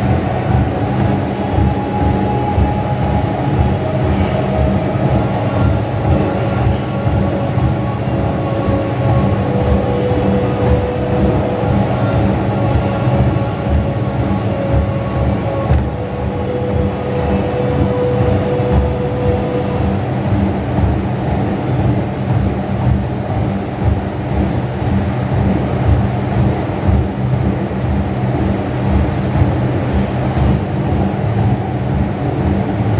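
Gym cardio machine running under a person exercising on it: a steady mechanical rumble with a quick, regular pattern of low thumps from the strides.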